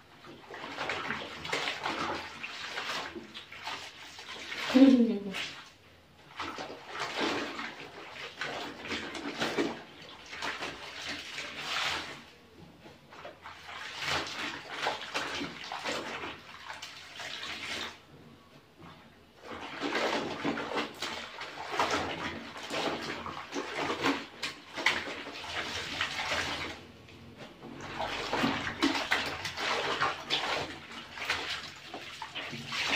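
Clothes being scrubbed and kneaded by hand in a plastic basin of soapy water: bursts of sloshing and swishing every few seconds, with short pauses between. About five seconds in, a short sound that drops in pitch is the loudest moment.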